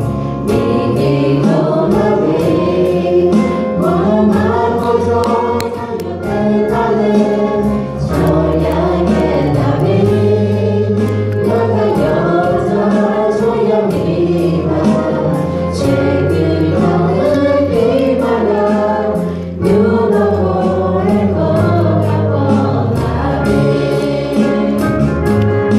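A mixed group of women's and men's voices singing a Christian Christmas song together through microphones, with a live band behind them: a low bass line and a steady beat.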